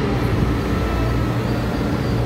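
Taiwan Railways EMU500-series electric commuter train (set EMU511) running past along the station platform: a steady rumble of wheels and running gear on the rails.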